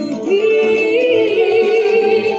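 A Malay-language song: a singer holds one long note with vibrato over backing music, the note starting about a third of a second in.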